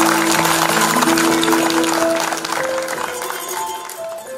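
Audience applauding over live instrumental music with held notes. The applause thins out and fades in the second half.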